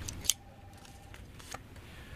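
Two short, sharp clicks about a second apart, the first louder, over quiet room tone.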